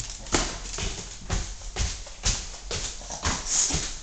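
Footfalls climbing wooden stairs: a Boston terrier's paws and claws tapping on the treads, with heavier steps among them, irregular knocks about two a second.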